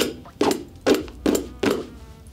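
A sharp point scraped hard across a leather boot upper in a scratch test: five quick rasping strokes, about two a second. The leather takes no visible damage.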